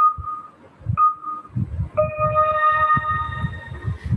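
Online quiz game's countdown sound effect: short electronic beeps about a second apart, then a longer, fuller tone from about two seconds in marking the start of the game, over low irregular thumps.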